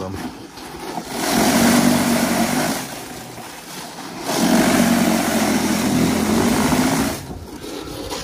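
Toro 60V cordless power shovel's brushless electric motor and rotor running as it churns through heavy slushy snow on pavement. It runs loud for about two seconds from a second in, eases off, then runs loud again from a little past four seconds until shortly before the end.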